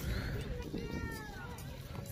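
A short high-pitched vocal call that falls in pitch, about a second in, over a steady low rumble.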